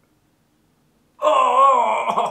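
A man's long, wavering wail, starting a little over a second in, as his leg is being waxed with wax strips.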